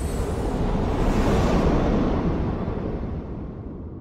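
Cinematic logo-reveal sound effect: a deep, noisy rumble that slowly fades out over the last couple of seconds.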